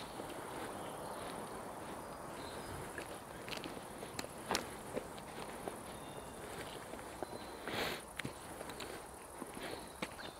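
Faint footsteps on a forest path, with scattered small clicks and crackles over a steady low hiss, and one brief louder rustle about eight seconds in.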